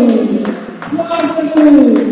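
A voice near the microphone shouting two long, drawn-out calls, each falling in pitch, with a few short knocks between them.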